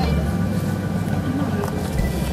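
Faint chatter of several voices over a steady low rumble.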